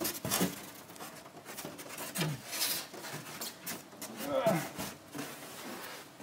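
Rigid foam insulation board being lifted and slid into place against a wall: scattered scrapes, rubs and knocks, with two short grunts about two and four and a half seconds in.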